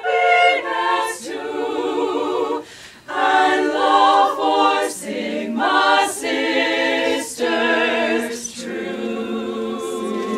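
A small group of women singing a cappella in harmony, with vibrato on held notes and short breaks between phrases near three seconds in and again near five.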